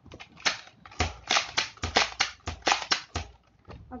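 Hard plastic clicks and clacks from a Nerf Accustrike toy blaster being handled and reloaded: a quick, irregular run of sharp clicks, thickest in the middle.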